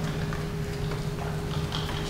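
Chalk tapping and scratching on a blackboard in short strokes as someone writes, over a steady low hum in the room.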